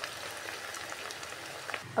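Sliced potatoes frying in hot oil in a nonstick pan: a steady, soft sizzle with faint scattered crackles.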